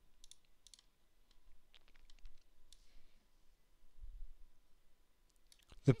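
Faint, scattered clicks of a computer mouse and keyboard, with a soft low thump about four seconds in.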